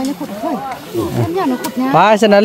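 People talking; only speech, with no other distinct sound.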